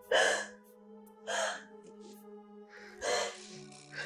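A woman sobbing: three gasping breaths about a second and a half apart, the first the loudest, over soft background music with long held notes.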